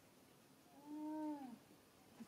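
A baby monkey gives one short cry, about a second long, near the middle: a steady pitched call that drops in pitch as it ends.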